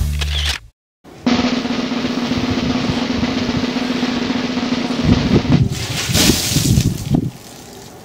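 Swing music breaks off into a moment of silence, then a steady snare drum roll runs for about four seconds and ends in a short flurry of louder drum hits, dropping to quiet background about seven seconds in.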